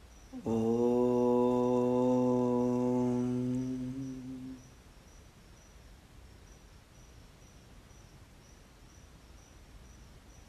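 A man chanting one long, steady-pitched note, a mantra tone, which starts about half a second in and fades out after about four seconds. Faint crickets chirp steadily underneath.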